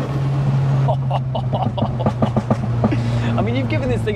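MK5 Golf GTI's big-turbo 2.0-litre turbocharged four-cylinder heard from inside the cabin: the rising revs drop right at the start as the throttle comes off, and the engine then settles into a steady drone. Voices and laughter sit over it in the middle and near the end.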